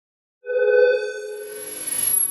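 Electronic logo sting: a bell-like synthesized tone strikes about half a second in and rings on, fading, while a shimmering swell with a thin high whine builds toward the end.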